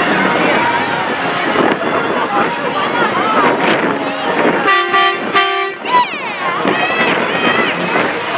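Semi truck's horn giving two short blasts in quick succession about halfway through, over steady crowd chatter, followed by a few shouts.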